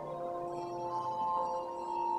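Church bells playing a slow tune: single pitched notes struck about a second apart, each ringing on and overlapping the last.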